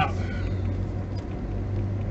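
Car cabin noise while driving: a steady low hum of engine and road.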